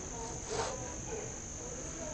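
Insects trilling in one steady, unbroken high tone, with a brief soft sound about half a second in.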